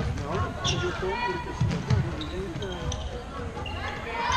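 Sounds of floorball play in a large sports hall: thumps and knocks from the court, the loudest just before two seconds in, under players' voices calling out.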